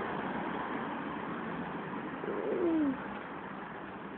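A single short animal call falling in pitch about two seconds in, over a steady noisy background.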